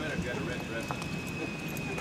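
A few light knocks of a harnessed draft horse's hooves shifting on pavement, under low voices, with a faint steady high whine behind.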